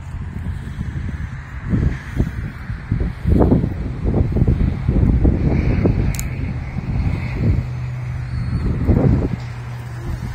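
Wind buffeting the camera microphone: irregular low rumbling gusts, heaviest through the middle of the stretch.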